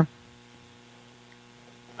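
Low, steady electrical hum on a recorded telephone line, with faint hiss, in a pause between speech.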